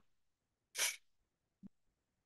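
Near silence broken by one short breathy hiss from a person, about three-quarters of a second in, then a faint click near the end.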